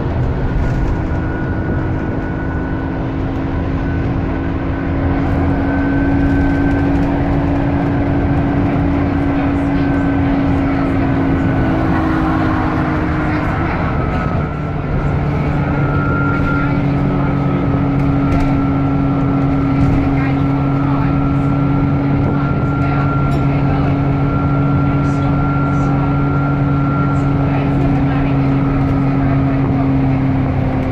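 Dennis E40D double-decker bus drivetrain heard from the upper deck under way: a steady engine rumble with a steady whine. About halfway through the level dips briefly and the pitch of the drone shifts, as at a gear change, then it carries on steadily.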